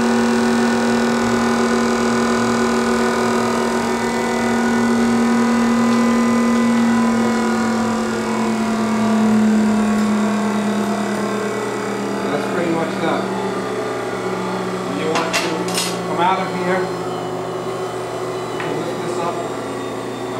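Electric motors of a Parker-Majestic internal grinder running with a steady hum that settles a little lower about halfway through. In the second half there are scattered metallic clicks and knocks as the machine's controls are handled.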